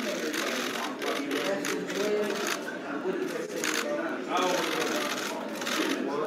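Many voices talking over one another in a room, with runs of rapid clicking from camera shutters firing.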